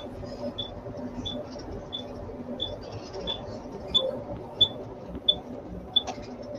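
Short, high ticks or beeps repeating at a steady pace, about three every two seconds, over a low steady background hum.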